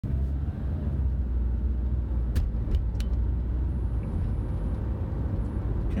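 Steady low rumble of a car's tyres and engine heard from inside the cabin while driving at road speed, with a few light clicks about two and a half to three seconds in.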